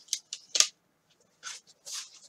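Several short crinkly rustles of packaging being handled while an item is taken out, the loudest just over half a second in.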